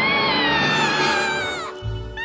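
An animated cat character's long scream, climbing in pitch and then sliding down and trailing off near the end, over dramatic music.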